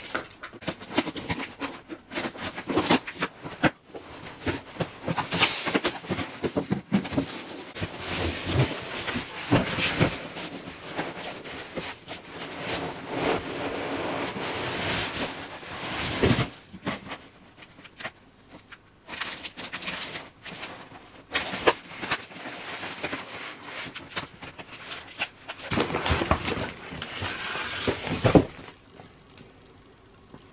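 Hands rummaging through a cardboard shipping box full of foam packing peanuts: continuous irregular rustling and crunching, with scattered louder knocks of cardboard and boxed items being moved.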